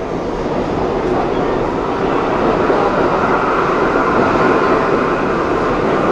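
New York City subway train noise at a station platform: a steady, loud rumble that grows a little louder over the first couple of seconds.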